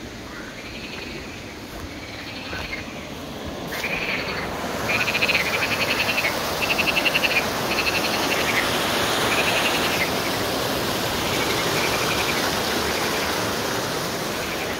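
Frogs calling: a series of croaks repeated about once a second, turning into fast pulsed trills that grow louder about four seconds in, over the steady rush of water running in a concrete channel.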